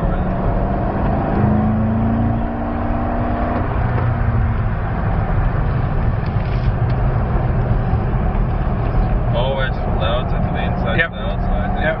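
Chevrolet Corvette Z06's 7.0-litre V8 heard from inside the cabin, pulling under load at track speed. Its pitch climbs gently for a couple of seconds soon after the start, then it runs on steadily.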